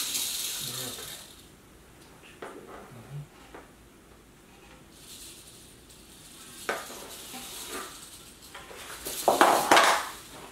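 Rattlesnake rattling in bursts, a high dry buzz, while it is pinned with snake tongs and being tubed. Knocks and scrapes of the tongs and plastic tube against the floor, the loudest near the end.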